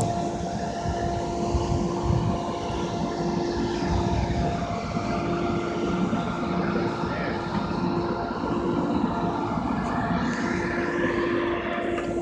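Boat motor running steadily underway, a constant pitched hum over the rush of wind and water.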